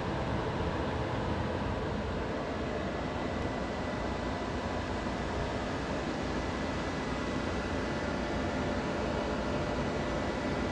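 Steady fan whir from a running electric space heater and the portable power station feeding it, with a faint high whine held throughout.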